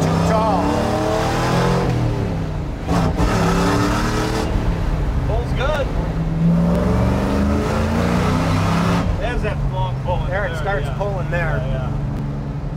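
Custom 1966 Chevrolet Chevelle's Chevy V8 accelerating on the road, its note climbing in pitch and dropping back several times as it pulls up through the gears, with wind and road noise loudest in the first few seconds.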